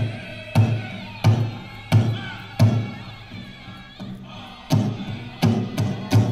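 Powwow big drum struck in unison by a drum group, with the singers' voices over the beat in a fancy shawl contest song. The beat runs at about one and a half strokes a second and stops for about a second and a half around the middle. It then resumes and quickens near the end.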